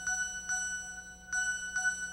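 Music: a bell-like chime ringing the same high note over and over, struck roughly every half second.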